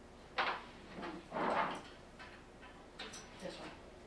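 Handling noises from robot parts being worked on at a table. A sudden clatter comes about half a second in, then a longer scraping sound around a second and a half, and a few light clicks near the end.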